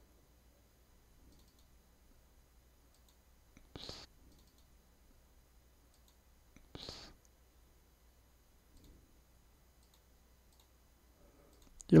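Two short clicks about three seconds apart from a computer mouse, with a few fainter ticks between them, as chart objects are selected and edited.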